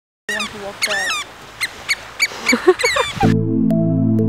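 Birds calling in a quick series of whistled, sweeping chirps after a brief silence, with slow background music of sustained tones taking over near the end.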